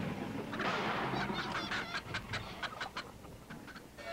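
Chickens in wooden crates on a truck bed clucking and squawking in a rapid run of calls, about five a second, that fades toward the end.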